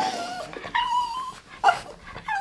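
Small dog whining up at a microphone held to its face: a falling high whine at the start, then a higher held whine of about half a second, and a short sharp cry near the end.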